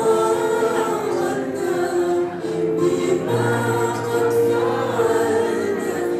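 A choir singing a hymn in long held notes, several voices together, the pitch moving to a new note every second or two.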